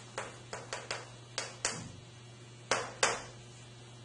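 Chalk striking and writing on a blackboard: about eight sharp taps, the two loudest close together near the end.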